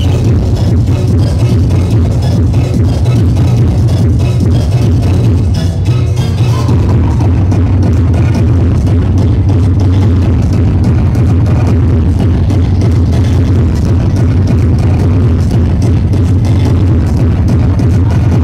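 Hardcore techno DJ set played loud over a club sound system: a fast, steady kick drum over heavy bass.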